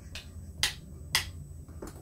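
A few short, sharp clicks, the two loudest about half a second apart near the middle: drumsticks tapping on the pads of an electronic drum kit.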